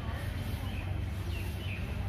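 A few faint, short bird chirps about a second in, over a steady low rumble.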